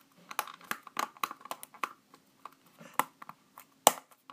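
Small plastic slime tub being handled and its lid pressed on: a quick run of plastic clicks and crackles in the first two seconds, scattered clicks after, then one sharper click near the end.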